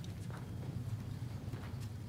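Children's footsteps: light, irregular steps and small knocks as they walk up to the front, over a steady low hum.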